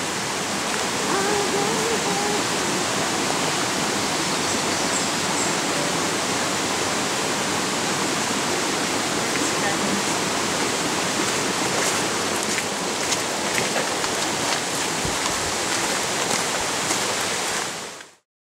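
Steady rush of running water, even and unbroken, cutting off suddenly at the end.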